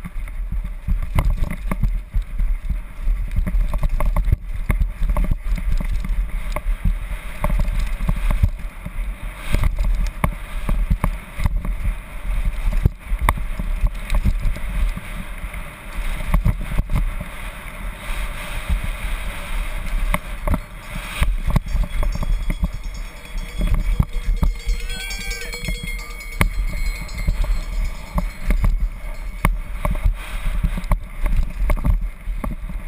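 Wind buffeting a helmet-mounted camera over the rattle of a downhill mountain bike running fast on a dirt forest trail, with frequent sharp knocks as it hits bumps and roots.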